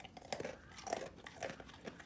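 A dog crunching and chewing an animal cracker: a run of short, irregular crunches.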